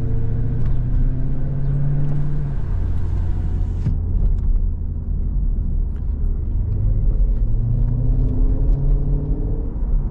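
2020 Jeep Grand Cherokee SRT's 6.4-litre HEMI V8 heard from inside the cabin while driving in town. The engine note holds steady for the first couple of seconds, fades back, then climbs in pitch over the last three seconds as the car accelerates.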